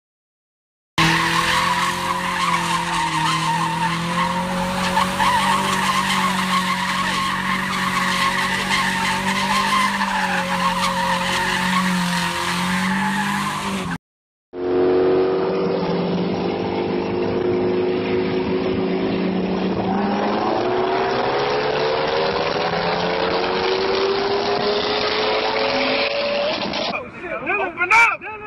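A car heard in two clips. First comes a steady, slightly wavering pitched note, held for about thirteen seconds, from an engine held at high revs or tyres squealing. After a brief cut to silence, an engine accelerates hard, its pitch rising steadily over several seconds.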